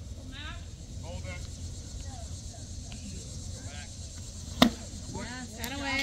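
One sharp pop a little past halfway through: a pitched baseball smacking into the catcher's leather mitt. Spectators' voices call out faintly before it and shout just after it, over a low steady rumble.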